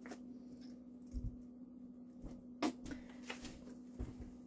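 A plastic squeeze bottle of French's yellow mustard being squeezed and handled over a bowl: a few light clicks and soft knocks and a brief soft hiss, over a steady low hum.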